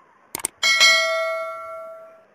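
Subscribe-button sound effect: two quick mouse clicks, then a bright bell ding that rings on and fades out over about a second and a half.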